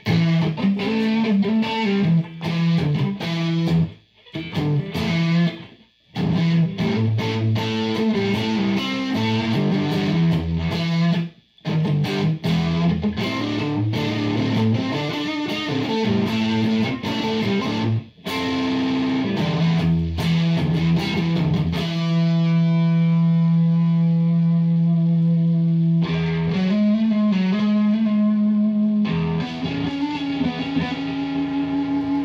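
Electric guitar played through a Satori distortion pedal into a tube amp: distorted riffs with brief stops, then a chord held for about four seconds past the middle, and more playing after it.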